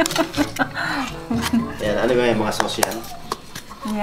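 A metal spoon clinking against takeout food containers as they are handled, with sharp clicks scattered through, over voices and background music.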